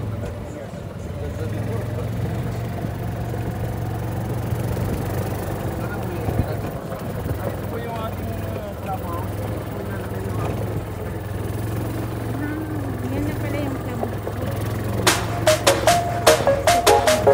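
Steady low hum of an open golf cart riding along, with faint voices of people talking over it. Music with a beat comes in about a second before the end.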